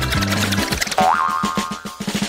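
Background music over the rapid ticking of a spinning prize wheel, with a cartoon 'boing' effect, a short rising tone, about halfway through.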